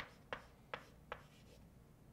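Chalk writing on a blackboard: four faint, short taps of the chalk in about the first second.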